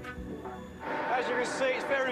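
Soft background music, then, about a second in, a man's voice starts over a steady background hum.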